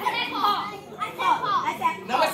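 Children's voices talking, high young voices in short syllables one after another.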